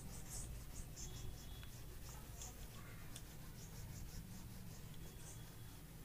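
Whiteboard being wiped clean with a duster: a run of faint, short rubbing strokes over the board, with a low steady hum underneath.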